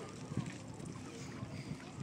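Outdoor wind noise on the microphone with faint distant voices, and one short thump about half a second in.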